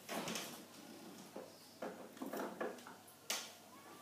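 Freezer being opened and a soap-lolly mould put inside, out of sight: a faint rush at the start, a few soft knocks and rattles, and a sharp click shortly before the end.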